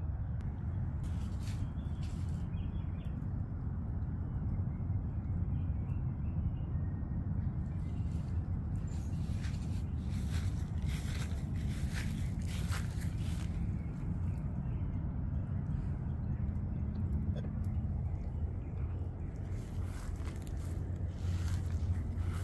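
A steady low outdoor hum, with scattered short clicks and rustles.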